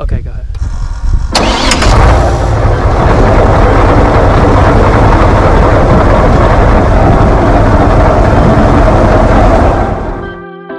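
Airboat engine and propeller running loud and steady, coming in suddenly about a second in and holding as the boat moves off through the marsh.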